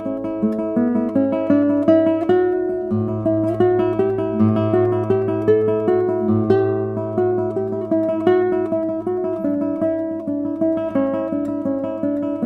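Michael Ritchie classical guitar played fingerstyle: a flowing run of plucked notes over ringing bass notes.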